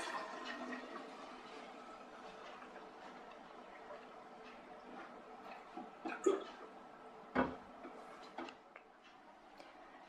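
Water pouring from one plastic bottle into another, fading away over the first few seconds as the pour ends, then a few light knocks as the bottles are handled.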